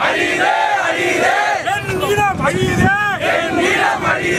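A crowd of people shouting slogans together in loud, repeated short phrases.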